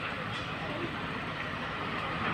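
Steady outdoor background noise with the indistinct chatter of a crowd of onlookers.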